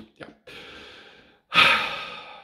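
A man's audible breath, then a louder sigh that starts suddenly about one and a half seconds in and trails off.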